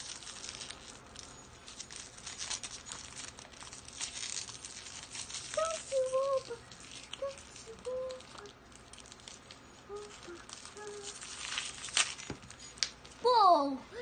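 Crinkly wrapper paper crackling and rustling as a child's hands unwrap a layer of an L.O.L. Surprise toy ball, in quick irregular crackles.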